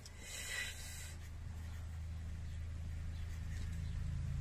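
A 0.3 mm artist fineliner pen writing on paper: a short burst of pen-tip scratching in the first second, fainter after that, over a steady low hum.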